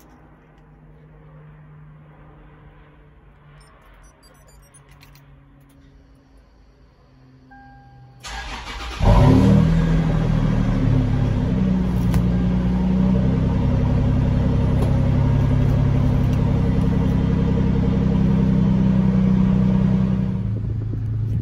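Toyota 4Runner's 4.0-litre V6 starting: quiet at first, then about eight seconds in the starter cranks briefly and the engine catches, running on at a steady idle.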